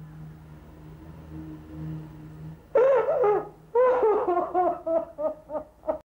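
A woman sobbing in broken, falling cries that start about three seconds in and come shorter and faster toward the end. Before them there is only a faint low steady hum.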